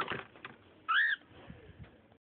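Cockatiel giving one short whistled call about a second in, rising and then falling in pitch.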